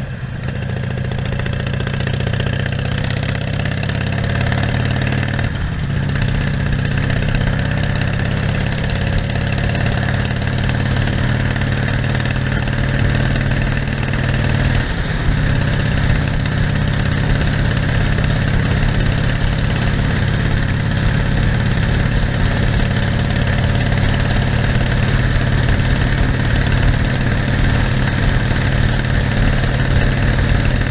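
Harley-Davidson Iron 1200's 1200 cc V-twin engine running steadily as the motorcycle is ridden, over a steady rush of wind and road noise. The engine note dips briefly twice, about five seconds in and about halfway through.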